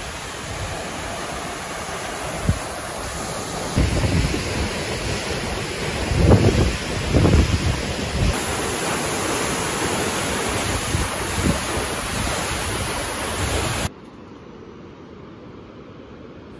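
Large jungle waterfall, Catarata del Toro, with the steady rush of falling water, while gusts of wind buffet the microphone. About fourteen seconds in, the sound cuts suddenly to a much quieter, distant hiss.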